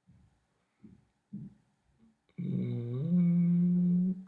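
A man's voice humming a long, low, steady note, starting a little past halfway and stepping up slightly in pitch partway through. Two faint soft knocks come before it.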